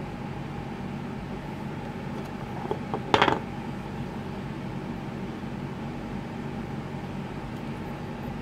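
Hard plastic parts of a small hydro generator knocking together as it is taken apart by hand, one short clatter about three seconds in, with a couple of faint clicks just before. A steady low machine hum runs underneath.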